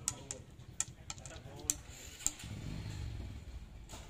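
Wooden chess pieces clicking against a wooden board and against each other: about five sharp, separate clicks in the first two and a half seconds. From about halfway through, a low steady rumble comes in underneath.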